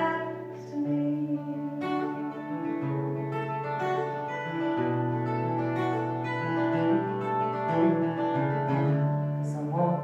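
Solo acoustic guitar played live. Its chords ring out and change about every second or two in an instrumental passage without singing.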